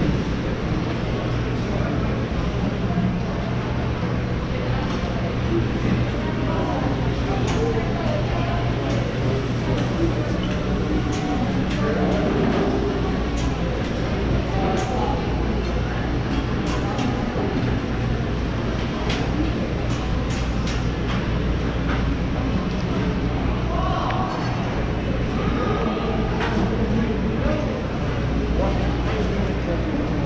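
Indoor shopping-mall ambience: a steady low hum and rushing background noise at an even level, with the murmur of people's voices around.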